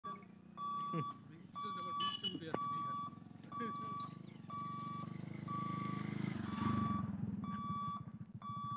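Level-crossing warning buzzer sounding a steady electronic beep about once a second, each beep about half a second long, as the crossing barriers come down. A motorcycle engine runs underneath, growing louder around six seconds in as it crosses close by.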